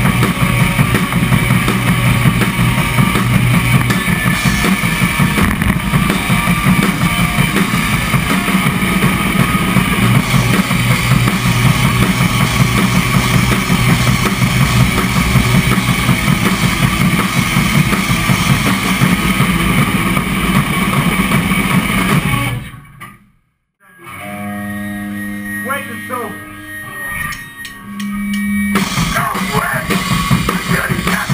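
Melodic hardcore band playing live: drum kit, distorted electric guitars and bass at full volume. About three-quarters of the way through the band stops abruptly and the sound drops out for about a second, then quieter held guitar notes ring for a few seconds before the full band comes back in near the end.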